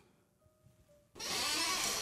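Near silence with a faint, thin steady tone, then a steady hiss that starts a little past the middle and lasts about a second.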